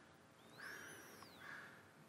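Near silence, with a faint bird whistle: one note about a second long that rises and then falls.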